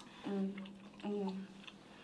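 A young woman's voice making two short wordless vocal sounds, steady in pitch and under half a second each, one near the start and one about a second in, over faint room tone.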